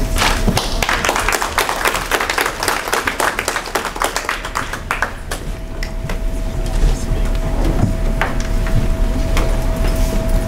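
Audience applauding, a dense patter of claps that dies away about halfway through. After that a faint steady tone hums under the room noise.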